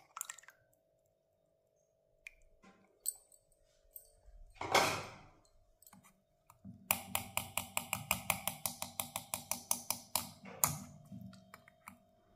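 Tamarind pulp being worked through a steel mesh strainer over a steel bowl: a single loud noisy burst about five seconds in, then a fast, even run of scraping strokes, about seven a second, for some three seconds, with scattered light clicks.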